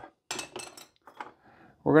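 A few light clicks and a short scrape of a small hand tool against the metal fret ends of a guitar neck, mostly in the first second, with one more faint tick later.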